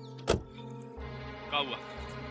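A car door of a Toyota Qualis SUV is slammed shut once, about a third of a second in, over background music with sustained tones. A short vocal sound follows a little past halfway.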